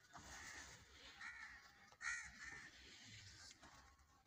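A bird calling outdoors in about four short, harsh caws, the loudest about two seconds in, over faint background noise.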